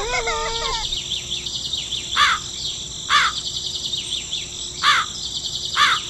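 A bed of birds chirping steadily, with a crow cawing four times, each caw short and harsh. A pitched, wavering call, likely the tail of a rooster's crow, ends in the first second.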